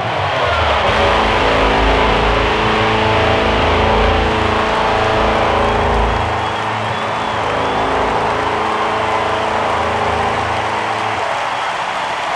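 Loud rock music: distorted electric guitar and bass chords held and ringing over a noisy wash. The deep bass drops away about a second before the end.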